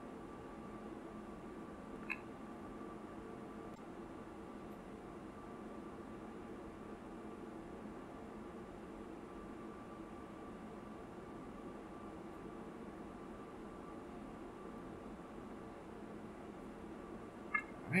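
Faint room tone: a steady electrical hum with a thin whine, and one small click about two seconds in.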